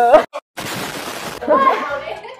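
A held voice is cut off by a sharp crash. After a brief silent gap comes a burst of crashing noise that lasts almost a second and stops abruptly: an edited-in shatter-style sound effect. A short warbling voice-like sound follows near the end.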